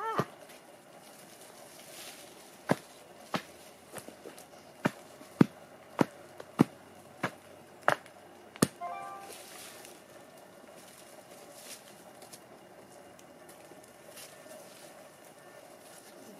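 Homemade wooden soil tamper, a board on an upright handle, struck down onto loose garden soil to firm it: about nine sharp strikes, a little under two a second, between about three and nine seconds in.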